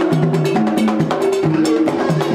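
Haitian Vodou ceremonial drumming: hand drums beating a fast, driving rhythm of low, pitched tones, with sharp, bright strikes layered over them.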